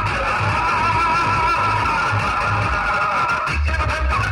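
Loud music played through a large DJ speaker stack: a held melody over repeated bass pulses, with a heavier, deeper bass hit near the end.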